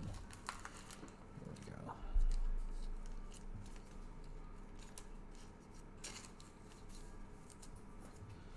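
Hands handling trading cards and plastic card sleeves: light rustles and small clicks, with a dull thump about two seconds in.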